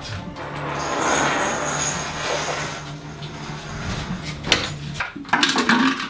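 A low, steady drone under a hiss that swells and fades, then a quick series of clicks and knocks near the end as a door lock and handle are worked.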